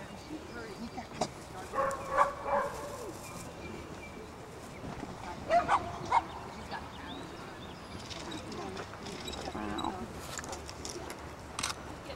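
A dog barks in two short clusters a few seconds apart, over faint voices in the background.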